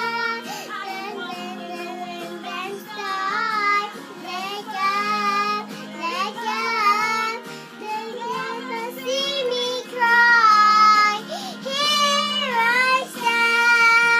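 A young girl singing a song along with an instrumental backing track, her high voice bending and wavering in pitch over steady held accompaniment notes. Her phrases get louder in the second half.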